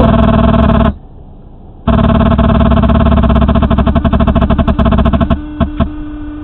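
A loud, harsh kazoo-like buzz from the car's audio during a hands-free phone call. It cuts out for about a second near the start, comes back pulsing rapidly, then drops to a fainter steady hum about five seconds in.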